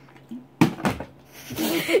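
A plastic water bottle knocking down hard twice in quick succession, a bottle flip landing and toppling, followed by a person laughing.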